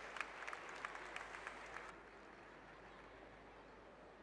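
Scattered handclaps over arena crowd noise for about the first two seconds, then the sound drops suddenly to a faint, dull hall ambience.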